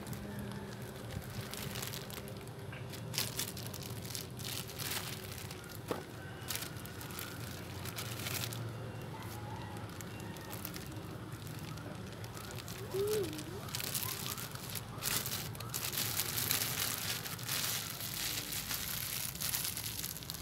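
Thin plastic bag crinkling and rustling in irregular bursts as it is wrapped and squeezed by hand around a ball of damp coconut-coir rooting medium.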